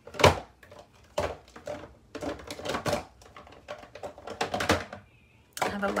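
Craft paint bottles knocking and clacking together as they are rummaged through by hand: a run of irregular sharp clacks, with a short pause near the end.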